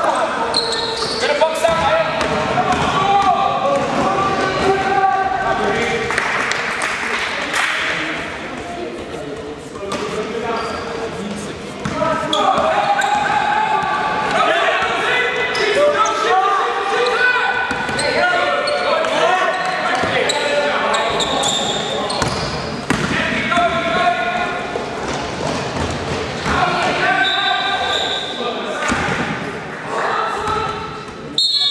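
Basketball game: a ball bouncing on the court floor amid players' and onlookers' voices, echoing in a large sports hall.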